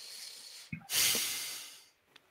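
A breath into a close microphone: a soft breath, then a longer exhale about a second in that fades out over about a second.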